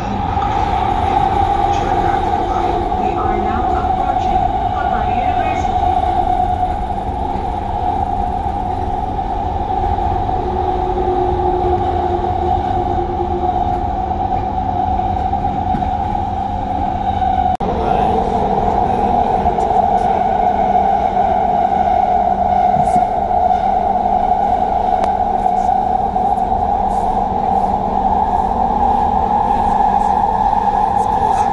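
Doha Metro electric train running, heard from inside the car: a steady low rumble with a constant hum over it, a little louder from just past halfway through.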